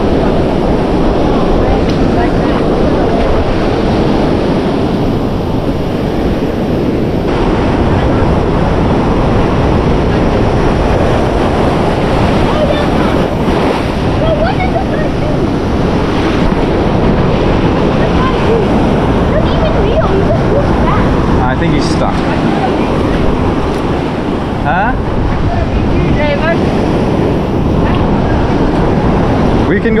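Ocean surf washing in over a rocky reef ledge, steady throughout, with wind noise on the microphone.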